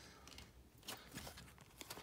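A few faint ticks and a soft rustle of glossy trading cards being slid and flipped through in the hands.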